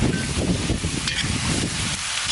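Lamb pieces, onion and carrots sizzling as they fry in a large cast-iron kazan, stirred with a metal spatula.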